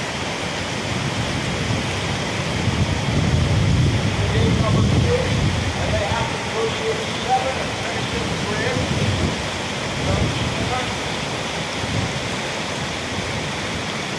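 Steady rushing roar of a large whitewater river rapid, with faint distant voices now and then.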